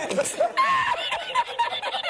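A man laughing hard in rapid, high-pitched bursts of giggling laughter that run on without a break.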